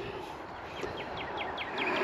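A bird calling: a quick, evenly spaced run of about eight short falling notes, starting just under a second in.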